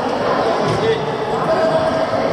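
Echoing sports-hall din: many people talking at once across the hall, with players' footfalls thudding and shoes squeaking on the wooden court floor during a badminton rally.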